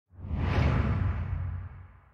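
Whoosh sound effect for an animated channel logo, with a deep rumble under it. It swells within about half a second, its hiss sinks in pitch as it goes, and it fades out near the end.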